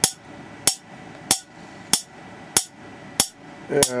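Water-drop-triggered spark gap firing a four-nanofarad capacitor discharge: sharp, snappy cracks at an even pace, about three every two seconds, each one a falling drop triggering the arc across the air gap.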